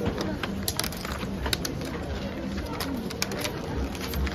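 Sheet of wrapping paper rustling and crinkling as a box is wrapped by hand, with a string of short sharp crackles as the paper is folded and lifted.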